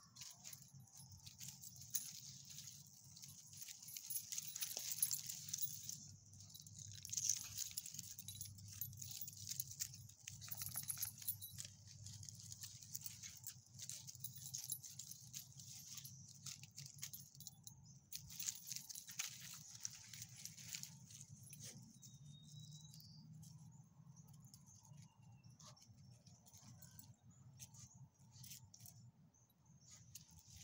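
Faint, irregular jingling and clicking of metal leash clips and collar hardware as several leashed small dogs move about. Rustling in dry fallen leaves and grass runs through it.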